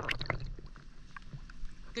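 Shallow creek water sloshing and splashing close by, loudest at the very start and then settling into small splashes and drips.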